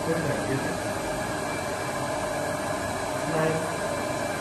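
A steady mechanical whir with a constant whine runs throughout, like a running motor or ventilation unit. A voice is heard briefly about three seconds in.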